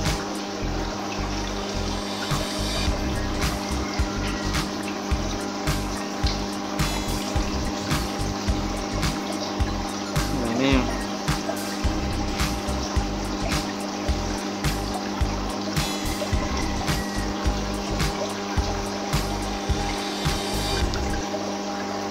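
Aquarium filter pump humming steadily with water trickling and bubbling into the tank, with many small clicks and splashes. A short voiced exclamation comes about ten seconds in.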